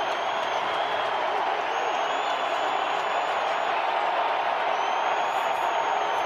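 Football stadium crowd noise: a steady roar of many voices heard through a TV broadcast, while the home crowd makes noise as the visiting offence lines up on fourth down. Faint high whistling tones come and go within it.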